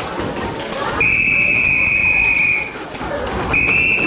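A police whistle blown in one long, steady blast of well over a second, then a second, shorter blast near the end. Thuds from the dancers' feet run underneath.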